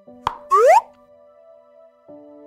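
A cartoon-style pop sound effect: a sharp click followed by a quick upward-sweeping bloop, about half a second in. Soft, sustained background music chords continue underneath.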